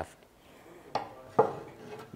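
Metal hand pliers knocking and clinking on a work surface, twice in quick succession about a second in. The second knock is the louder.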